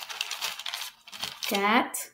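Small beads clicking and clinking against one another and a metal bowl as fingers rummage in and pick them out one at a time.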